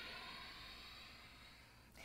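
Near silence: faint room tone with a soft hiss that fades away over the first second and a half.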